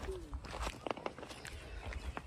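Footsteps on a dry, gravelly dirt track, a few irregular steps, with low rumble from wind and handling on the phone's microphone.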